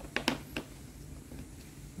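A few light plastic clicks in the first half second as the orange strap hook on a Hilti VC 40 MX vacuum's lid is handled, then only low room background.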